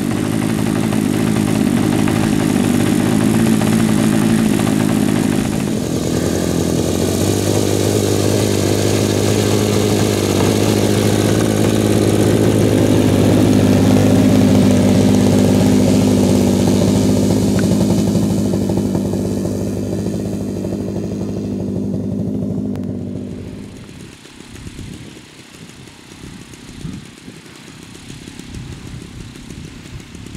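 A 35 cc Moki M210 engine on a giant-scale P-51 Mustang model, running loud and steady at high revs. Its pitch steps up about six seconds in. About 23 seconds in, the sound drops sharply to a much quieter, uneven running.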